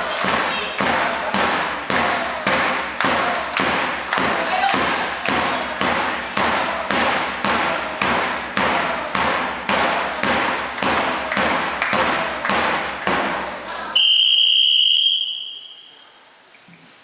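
A large drum beaten at a steady beat of about two strokes a second, with crowd voices over it. About fourteen seconds in, the drumming stops and a referee's whistle sounds one long, loud blast.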